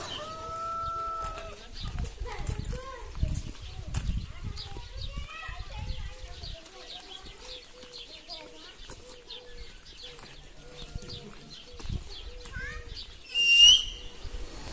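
Birds calling and chirping. A held two-note call opens, a steady run of short low repeated notes follows in the middle, brief high chirps go on throughout, and one loud high call comes near the end.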